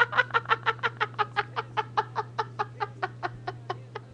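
A woman's long run of rapid, high-pitched laughter, about six short laughs a second, fading toward the end, over a steady electrical hum.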